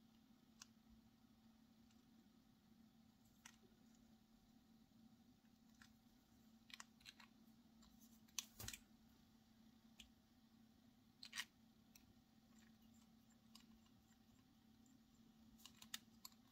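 Near silence with scattered faint clicks and taps of a TWSBI Eco's plastic piston mechanism and a thin metal wrench being handled. The loudest cluster of clicks comes a little past the middle, another about two-thirds through.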